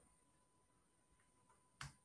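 Near silence: room tone, with one short click near the end.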